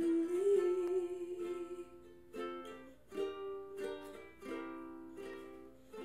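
A woman's voice holds a final sung note, wavering slightly, over a ukulele; the voice stops about two seconds in and the ukulele strums several closing chords, each ringing out and fading.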